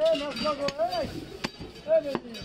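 Heavy butcher's cleaver chopping beef on a wooden chopping block, two sharp chops about a second apart. A voice calling out is as loud or louder near the start and near the end.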